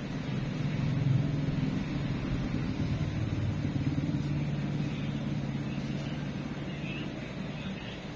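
Low engine rumble of a motor vehicle passing close by, swelling about a second in and slowly fading away.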